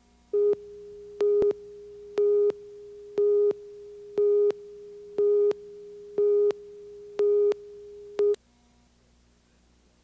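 Leader countdown tone on a TV commercial reel: a mid-pitched electronic beep sounding once a second, eight times, over a fainter steady tone of the same pitch, cutting off with a click a little after eight seconds.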